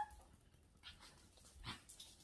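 A Pomeranian gives a short, faint whimper, wanting a treat held just out of reach. A couple of brief, faint noises follow.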